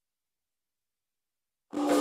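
Complete silence, then a choir singing cuts in suddenly near the end.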